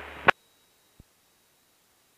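Cockpit intercom audio feed: a low hum trailing the end of a radio call cuts off with a click just after the start, leaving near silence with one faint tick about a second in. No engine noise comes through, as is usual when the sound is taken from the headset intercom and its squelch has closed.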